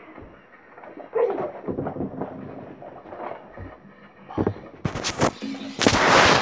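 Low room noise with faint voices and rustling, several sharp knocks about four and a half to five seconds in, then a pulsing low-pitched music beat starting near the end.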